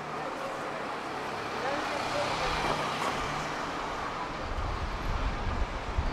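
Busy city street ambience: road traffic running by, with passers-by talking faintly. A deeper rumble from a passing vehicle builds near the end.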